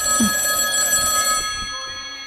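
An old-style telephone's bell ringing with a metallic rattle. The ring stops about one and a half seconds in and rings away.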